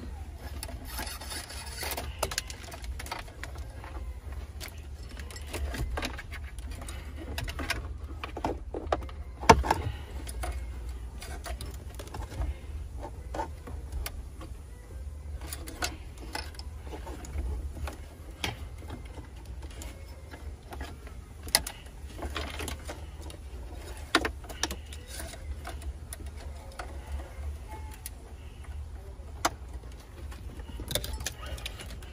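Wiring harness being fed by hand through the gaps in a Jeep dashboard: scattered light clicks and rustles of wire and plastic trim, with one louder knock about nine seconds in, over a steady low rumble.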